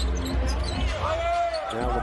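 A basketball being dribbled on a hardwood court: repeated low thuds.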